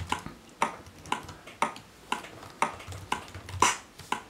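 A sampled bass drum and snare from the Tidal live-coding pattern "bd sn", alternating in a steady loop at about two hits a second.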